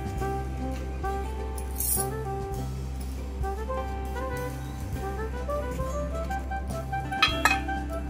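Background music: an instrumental tune of short notes stepping up and down over a steady low drone.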